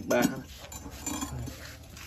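A glazed ceramic bonsai pot clinking and scraping against a metal turntable plate as it is turned by hand.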